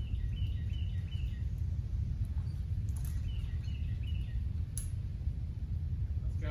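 A bird calling: two short runs of rapid, repeated chirps, one at the start and one about three seconds in, over a steady low background rumble. A single sharp click comes a little before the end.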